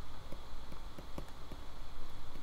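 A few faint, light taps of a stylus on a tablet screen while numbers are handwritten in digital ink, over a steady low hum.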